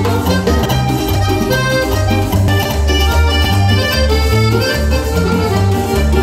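A live band playing Latin dance music, with guitar, keyboard and timbales over a steady, repeating bass line.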